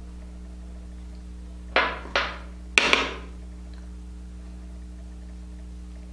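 Sharp knocks of hard objects on a tabletop: two single knocks about half a second apart, then a quick double knock, over a steady low electrical hum.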